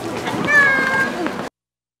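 Voices with a high, drawn-out, slightly falling squeal-like tone. The sound then cuts off abruptly about a second and a half in.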